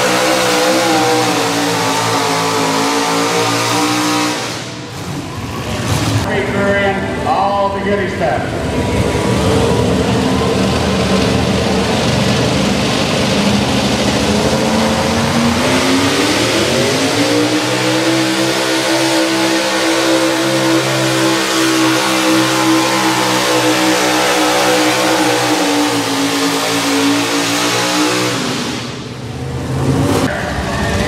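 Econo Rod pulling tractor engines running at full throttle while dragging a weight-transfer sled. The first pull ends about four seconds in. About sixteen seconds in, the next tractor's engine revs up into a steady high-rpm run under load for some ten seconds, then drops off near the end as the throttle comes off at the end of the pull.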